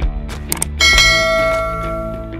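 A bell-like notification chime rings out once a little under a second in and fades away over about a second and a half, just after a short click, over background music with a steady beat.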